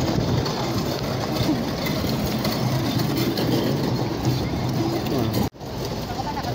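Steady outdoor street noise with indistinct background voices, picked up on a phone microphone. About five and a half seconds in, the sound cuts out abruptly for an instant, then resumes.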